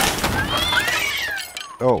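A cat yowling, a drawn-out cry that wavers up and down in pitch, over a burst of clattering noise at the start; it fades out about a second and a half in.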